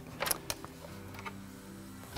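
A few light clicks and knocks as the iMac's speaker enclosure is handled and lifted out of the chassis, mostly in the first half-second, over a faint steady hum.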